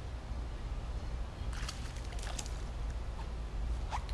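A fishing rod swept sharply upward to set the hook on a bite, a quick swish just before the end, over a steady low rumble. A few brief clicks and rustles come around the middle.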